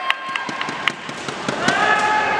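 A handful of sharp cracks in the first second from a nanquan wushu routine's slaps and stamps, over crowd chatter from the stands, with a voice rising near the end.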